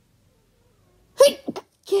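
A person sneezing: a single loud, sudden sneeze a little over a second in, after a second of quiet.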